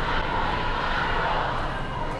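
Steady vehicle noise: an even rumbling hiss with no breaks.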